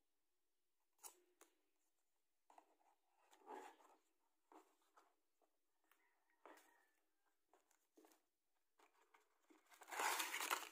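Faint, scattered rustles and light taps of a small cardboard product box being handled and opened by hand, its flap lifted and inner tray moved.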